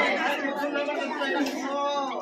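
Speech only: a performer's voice speaking into a microphone, with other voices chattering.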